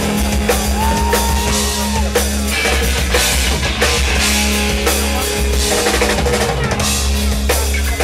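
Hardcore punk band playing live at full volume: distorted electric guitars, bass guitar and a driving drum kit, with the drums to the fore.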